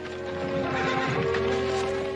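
A horse rearing and whinnying, with a wavering neigh from about half a second in and hooves clopping, over background music.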